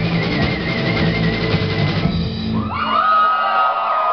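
Live rock band (electric guitars and drum kit) playing the last bars of a song and stopping about two-thirds of the way in. The audience then cheers, with rising and falling whistles.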